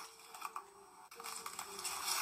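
Faint scattered clicks and light rustling over quiet room tone.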